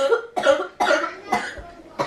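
A girl coughing about four times in quick succession, each cough short and rough.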